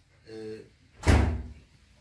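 A single loud thump about a second in, sudden and heavy, dying away within half a second.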